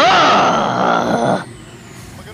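A young man's loud, hoarse, strained yell of excitement. It rises in pitch at the start and cuts off after about a second and a half.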